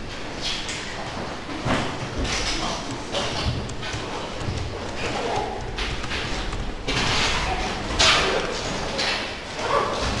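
Classroom commotion as students get up: chairs and desks scraping and knocking, with voices in the background. The loudest knock comes about eight seconds in.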